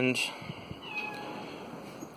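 A cat meowing once, faintly and briefly, about a second in, after the tail of a man's drawn-out spoken "and".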